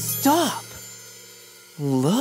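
Children's song music stopping short: a voice calls out once with a rise and fall in pitch, a few held notes fade away, and a second call comes near the end.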